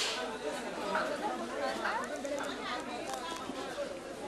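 Many people talking at once with no single voice standing out: the chatter of a busy market crowd of shoppers and vendors.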